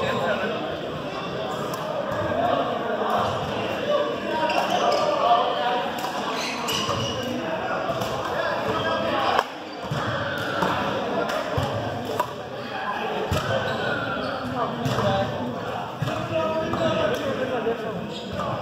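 The sound of a busy sports hall during badminton doubles: voices and chatter with repeated sharp knocks and thuds, which fit racket strikes on the shuttlecock and footfalls on the wooden court, echoing in the large hall.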